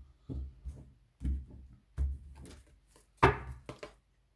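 Decks of oracle cards being handled and knocked down onto a cloth-covered wooden table: four dull knocks about a second apart, the last, a little past three seconds in, the loudest and sharpest, with light card scuffing between them.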